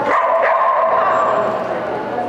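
Border Collie barking, with a sharp onset at the start and another about half a second in.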